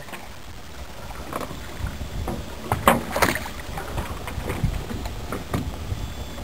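Open-ocean water lapping and sloshing, with low wind rumble on the microphone and several short sharp splashes or knocks, the loudest about three seconds in.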